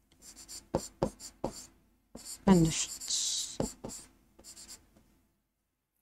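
Writing on a blackboard: a run of short, scratchy strokes that stops about five seconds in.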